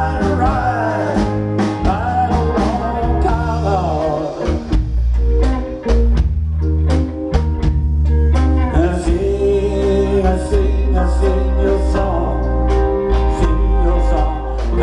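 Live blues-rock band playing: electric guitars, bass guitar and drums, with a lead melody line over them. Around the middle the sound thins to drums and bass, then fills out again.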